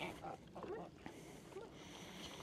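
Faint sniffing and snuffling of an Anatolian shepherd puppy exploring new ground, with a few faint short calls in the background in the first second.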